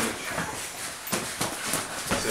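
Boxers sparring in a ring: irregular sharp knocks and thuds from gloved punches and footwork, four or five of them, mostly in the second second.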